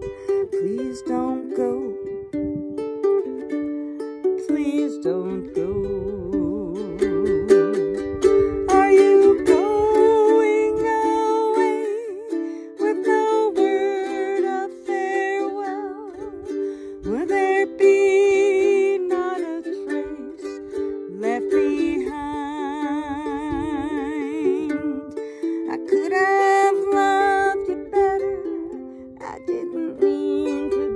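A ukulele strummed in steady chords, with a wordless melody over it, hummed or sung with a wide vibrato and climbing high for a few seconds near the end.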